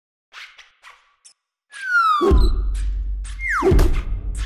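Produced intro sting of sound effects: a few faint clicks, then two falling whistles, each landing in a deep boom with a low rumble that lingers, about a second and a half apart.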